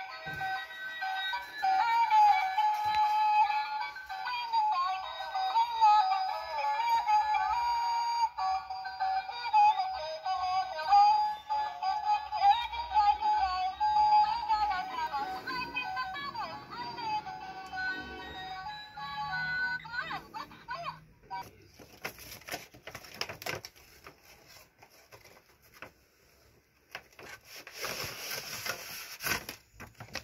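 Battery-powered mermaid doll in its box playing its built-in electronic song: a synthesized singing voice carries a melody for about twenty seconds, then stops. After that come a few handling knocks, and a rustle near the end.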